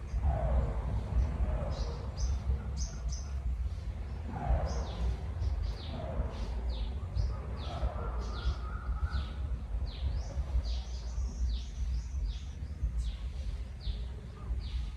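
Birds chirping over and over in short, quick, downward-sliding notes, over a steady low rumble of outdoor background noise.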